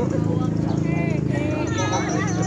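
People talking in the background over a steady low buzzing hum.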